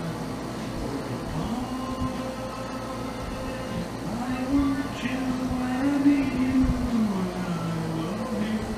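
A slow melody of long held notes that slide smoothly up and down between a few pitches.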